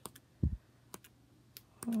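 Pages of a patterned paper pad being turned: a few light, sharp paper clicks and one soft low thump about a quarter of the way in.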